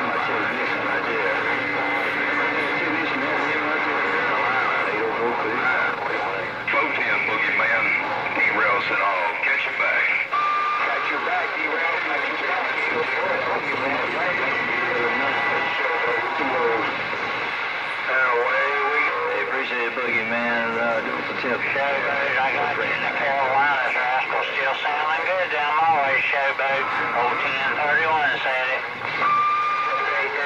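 Galaxy CB radio receiving several stations at once through its speaker: garbled voices talking over one another, with steady whistles and wavering tones mixed in, so that no single voice comes through clearly.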